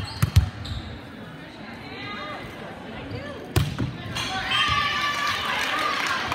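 Volleyball being struck on an indoor court: a few sharp smacks right at the start and a louder one about three and a half seconds in, followed by players' voices calling out.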